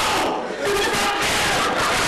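A man yelling at the top of his voice in one long, loud cry, broken briefly about half a second in.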